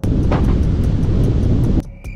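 Wind rushing over the microphone of a camera mounted on the front of a moving Tesla Model 3, mixed with road noise. It is loud, cuts in abruptly and stops suddenly after just under two seconds.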